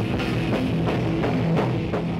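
Live heavy rock band playing loud, with electric bass guitar and a drum kit keeping a steady beat.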